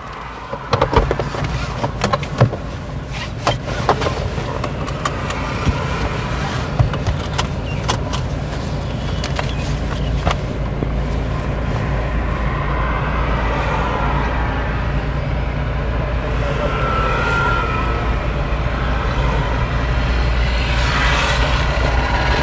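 Toyota Fortuner SUV's engine running steadily while parked, with a few short clicks in the first ten seconds, then growing slightly louder near the end as the vehicle pulls away.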